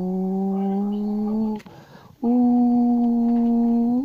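A person's voice holding two long, steady notes, each about one and a half seconds, with a short break between; the second note is a little higher.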